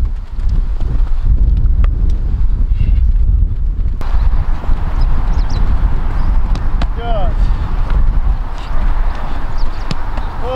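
Wind buffeting the microphone with a steady low rumble, over quick footfalls on grass from footwork drills. A sharp smack of a football is heard near the end.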